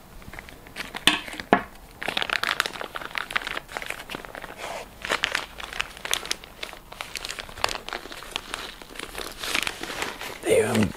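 Thin plastic vacuum-pack bag crinkling and rustling as it is handled and emptied, with a couple of sharp clicks about a second in and a denser run of crackling from about two seconds in.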